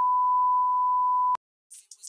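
A steady 1 kHz test-tone beep of the kind that goes with SMPTE colour bars, held for a little over a second and cutting off suddenly.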